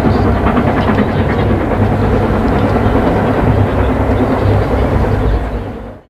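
Steam-hauled train led by LMS Princess Coronation Pacific 6233 Duchess of Sutherland running through at speed, its wheels clicking over the rail joints. The sound fades out near the end.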